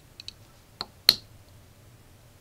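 Small screwdriver tip clicking against a tiny trim potentiometer on a step-down converter board as it is fitted into the slot and turned: two faint ticks, then two sharper clicks about a second in, the second one the loudest.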